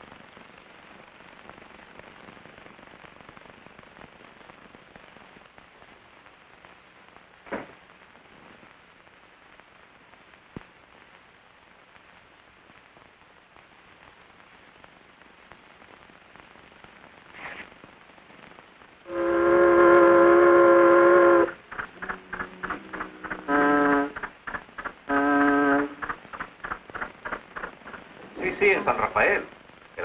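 Faint steady hiss of an old film soundtrack for most of the stretch, then a horn sounding: one long held blast about two-thirds of the way through, followed by rapid clattering and two shorter blasts.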